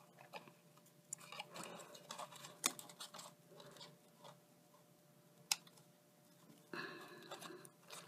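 Quiet handling of cardstock: faint rustles of card and a few light, sharp taps and clicks as a paper flower is positioned and pressed onto a black card box, with a longer faint rustle near the end.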